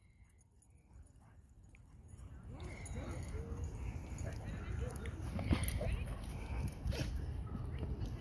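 Two dogs, a husky and a short-coated red dog, play-wrestling: scuffling with short low play growls. It starts about two and a half seconds in after near silence, with a couple of sharp clicks later on.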